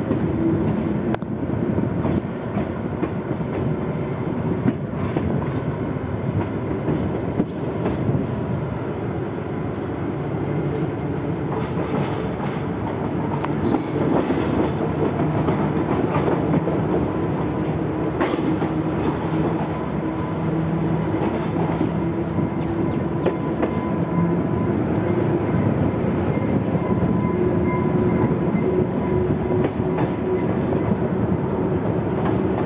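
Sri Lankan rail car T1 515 running along the track, heard from its open side window: a steady running drone with wheel-on-rail noise and occasional clicks over rail joints. A faint steady whine sits over it, and the sound grows a little louder about halfway through as the car gathers speed.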